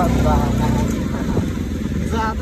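Motorcycle engine running at low speed, a steady low rumble, with a person's voice over it during the first second or so.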